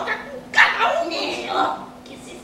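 An actor's voice making loud wordless vocal cries, starting sharply about half a second in and wavering in pitch.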